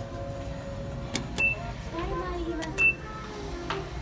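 Two short, high electronic beeps about a second and a half apart, each just after a click: the acknowledgement tone of a Hitachi elevator's car buttons being pressed, over a low steady hum.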